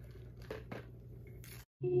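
A few faint clicks and scrapes from a stirrer working a liquid mixture in a glass measuring jug, over a steady low hum. Near the end the sound cuts out briefly and ambient music begins.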